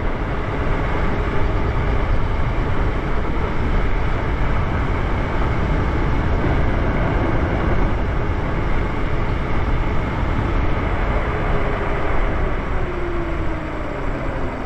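Wind rushing over the microphone of an electric bike riding at about 35 mph, with a faint electric-motor whine that falls in pitch over the last few seconds as the bike slows.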